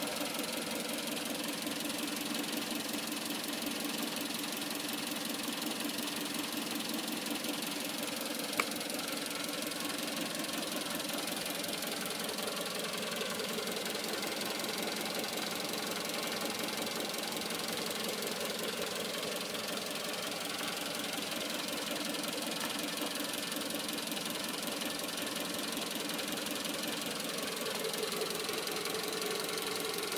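A car engine idling steadily, heard from in front of the car, with one short click about eight and a half seconds in.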